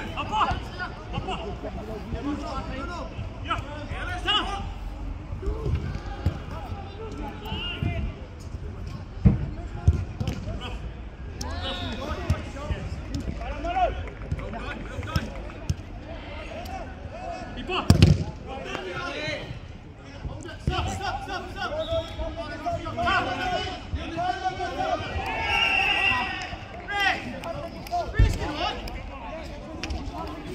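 A football being kicked on an artificial turf pitch: several sharp thuds, the loudest about two-thirds of the way through, among players' shouts and calls.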